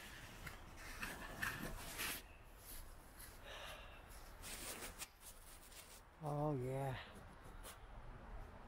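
Scattered rustling and light clicks, then about six seconds in a man's short wordless hum of two notes, the second lower.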